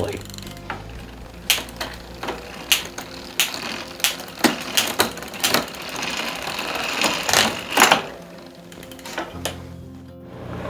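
Bicycle drivetrain of a 7-speed hybrid turning on a work stand: the chain runs over the rear cogs and derailleur jockey wheels with a steady whir, broken by irregular sharp clicks and clatter as the chain is shifted across the gears. The clicking thins out and it grows quieter near the end.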